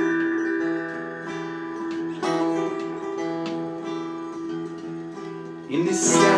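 Acoustic guitar strummed in a slow instrumental passage: chords left to ring out, with a new strum about two seconds in and a louder one just before the end.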